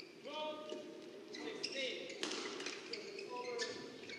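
Badminton rally: several sharp racket strikes on the shuttlecock, mostly in the second half, with short high squeaks from players' shoes on the court.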